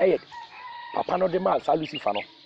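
A person speaking in short stretches, with a thin held high tone in the brief pause early on.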